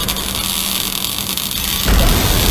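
Electric-shock sound effect: a steady buzzing hiss over a low hum, which breaks off just before the end as a louder, deeper sound begins.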